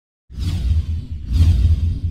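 Cinematic logo-reveal sound effects: after a brief silent gap, whooshes swell in over a deep low rumble, two of them sweeping up bright about half a second and a second and a half in.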